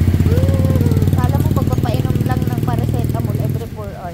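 Motorcycle engine idling close by, a fast, steady putter that drops away sharply near the end.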